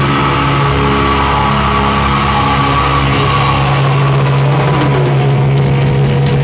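Live doom metal band holding a sustained, ringing chord on distorted guitar and bass. Drum and cymbal hits come in over it in the last couple of seconds.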